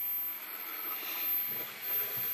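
Hubsan X4 H107L mini quadcopter's four small brushed motors and propellers whirring steadily at minimum throttle.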